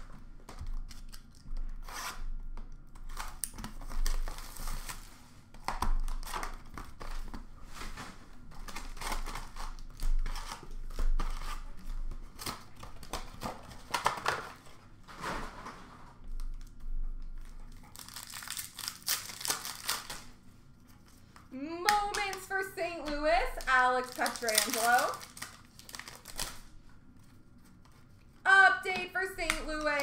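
Upper Deck SP Authentic hockey card packs being torn open by hand, their wrappers crinkling and the cards being handled, with a longer tearing rustle about two-thirds of the way through. A voice comes in twice toward the end.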